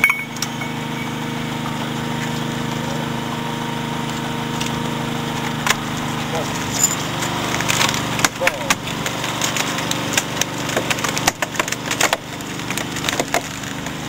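Hydraulic rock splitter wedged into a core-drilled hole, its power unit running steadily while the rock gives sharp cracks and snaps. The cracking comes thick and fast from about eight seconds in as the split opens.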